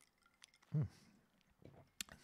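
A man's short falling "hmm" about a second in. Otherwise quiet room tone with a few faint clicks.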